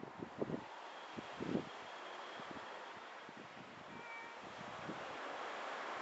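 A faint, brief cat meow about four seconds in, over a steady low outdoor hiss, with a few short soft noises in the first second and a half.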